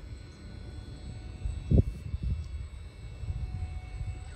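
WaterTech Volt FX-8LI battery-powered pool vacuum running underwater on its pole, a quiet steady hum under a low rumble. There is one thump about two seconds in.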